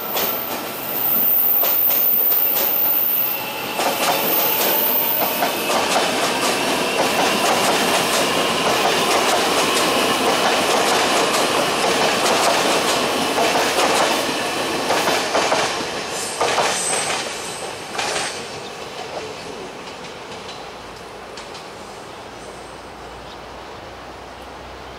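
A Taiwan Railway electric multiple-unit train running past along the platform track, with a high wheel squeal and clicking over the rail joints. It fades away between about sixteen and twenty seconds in.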